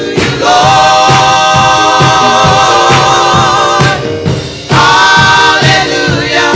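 Gospel choir singing. Voices hold long notes with a slight waver, break off briefly about four seconds in, then come back with the next phrase over a steady low beat about twice a second.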